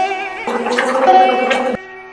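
A person gargling water, a gurgling voiced gargle that starts about half a second in, lasts just over a second and cuts off abruptly. Plucked-string Carnatic-style music plays underneath.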